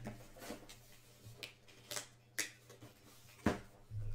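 Quiet handling of trading cards and their packaging: a handful of short, soft clicks and rustles, the sharpest a little before the end.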